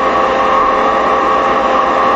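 Steady hiss with a hum, about as loud as the voice around it, holding even throughout: the background noise of the recording.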